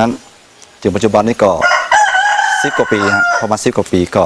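A rooster crowing once, a single long call of nearly two seconds that starts about one and a half seconds in, with a man talking over it.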